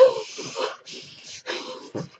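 A woman breathing hard through an open mouth: several loud, rasping breaths in a row, the first one sharp and the loudest. It is the strained breathing of a hypnotised patient reliving going into labour.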